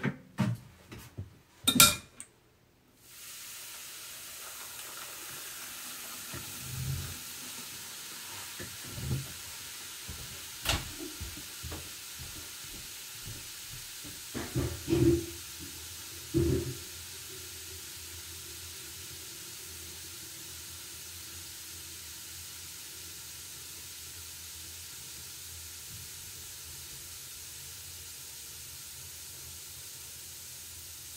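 Pearl-drop fizzies dissolving in a stainless bowl of water: a steady, even fizzing hiss that starts about three seconds in and carries on. A few clatters come at the start and several separate knocks come in the middle.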